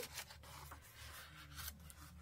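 A paper page of a handmade journal being turned by hand: a faint rustle of paper and fingers rubbing over it.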